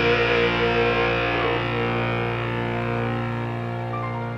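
Final chord of a rock song ringing out on guitar after the last sung line, held and slowly fading away.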